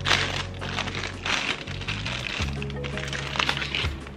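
Crinkling and crackling of a clear plastic bag as it is torn open and an empty plastic applicator bottle is pulled out, over steady background music.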